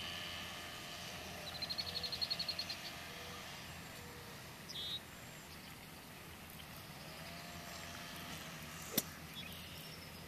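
Outdoor ambience with birds calling: a rapid trill of about ten high notes from about one and a half seconds in, a short high chirp a little before five seconds, and one sharp click about a second before the end.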